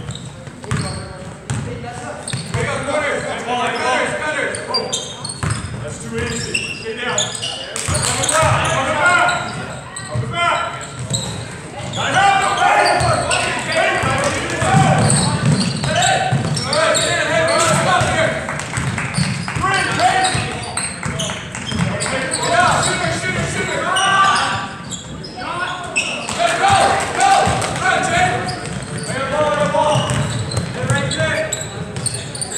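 A basketball dribbling and bouncing on a hardwood gym floor during play, under voices calling and shouting that echo around the gym.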